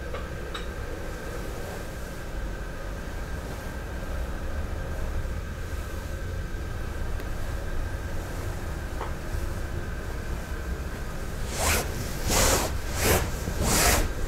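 Rustling of kimono and hakama fabric: three or four loud swishes near the end as the hands are moved and laid on the lap, over a steady low hum of room noise. Near the start, a faint click as the lid is set on the iron tea kettle.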